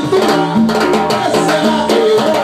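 Live cumbia band playing an instrumental passage: a plucked-string melody over a bass line and drums.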